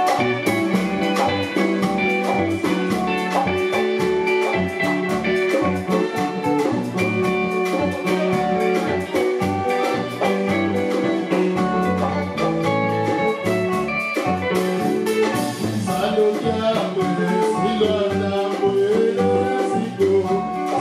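Live band playing: electric guitar and drum kit keeping a steady beat, with a male lead voice singing into a microphone.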